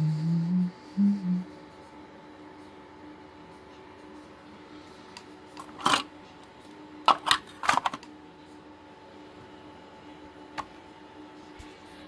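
A short hummed voice sound at the start, then a few sharp clicks and knocks, about six in all and bunched around the middle, as plastic and metal parts are handled inside an open HP BL460c G6 server blade. A faint steady hum runs underneath.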